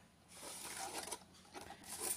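Faint rustling and handling noise as the amplifier circuit board and the camera are moved by hand.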